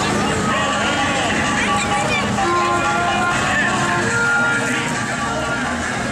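Street sound of a carnival parade: music playing from a passing float's sound system, mixed with crowd voices and a tractor engine running as it pulls the float.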